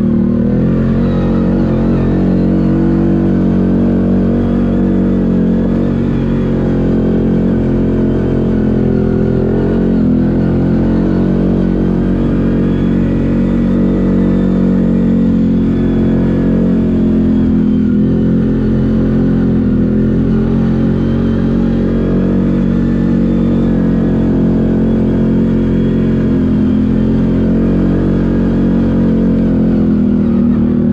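CFMOTO 850 ATV engine running at a steady, moderate throttle on a dirt trail, heard from the rider's seat. The engine note dips and rises gently a few times as the throttle is eased and opened.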